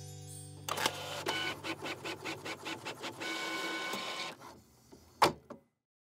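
Desktop printer printing a page: a quick run of clicks, then a steady whir that stops, and one sharp click near the end.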